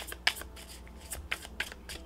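A deck of tarot cards being shuffled by hand: a quiet run of quick, irregular card flicks and clicks.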